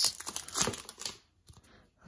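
Foil wrapper of a hockey card pack crinkling in the hands as it is opened and the cards are slid out, for about the first second, then dying away.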